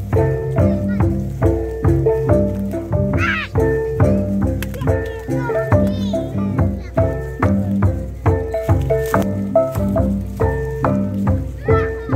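Gong-and-drum ensemble: several bronze gongs, flat and bossed, struck with mallets in a repeating interlocking pattern over low drum strokes. A high child's cry rises and falls about three seconds in, and another comes about six seconds in.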